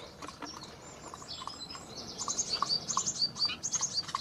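Small birds singing outdoors: high chirps and quick runs of repeated notes, busiest in the second half.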